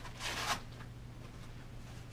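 A single short rasping rip, about a third of a second long, as a blood pressure cuff is taken out of an EMT kit and readied to take a blood pressure.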